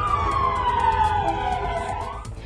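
A siren wailing: one slow downward sweep in pitch that turns back upward near the end.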